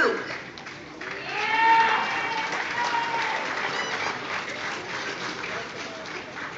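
Audience applauding, with one person in the crowd giving a long drawn-out cheer about a second in; the clapping then slowly dies away.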